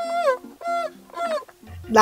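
Bukusu traditional music: three short pitched notes, each sliding down in pitch, over a low steady note.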